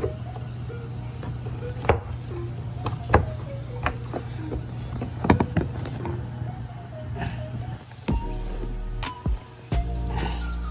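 Background music with a stepping melody, a deep bass line coming in about eight seconds in. A few sharp knocks sound over it as a plastic drain fitting is handled and pushed into a plastic tub.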